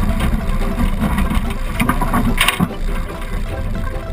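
1984 Lincoln Mark VII driving over a muddy, rutted forest track: a steady low engine-and-road rumble with scattered knocks as the car bounces through the ruts, and a brief harsher burst of noise about two and a half seconds in.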